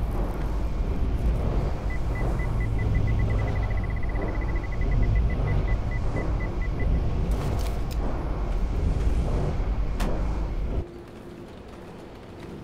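A heavy low rumbling drone with a run of short, high electronic beeps that speed up, then slow down and stop. A sharp click comes near the end, and then the rumble cuts off suddenly.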